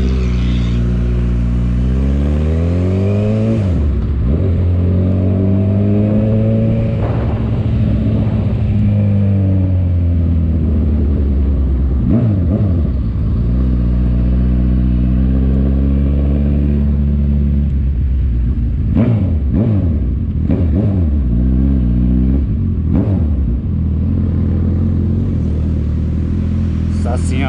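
Honda CB1000R's inline-four engine heard from the rider's seat while riding, its revs climbing and then dropping several times as it pulls through the gears and slows. Near the end the revs rise and fall in quick short bursts.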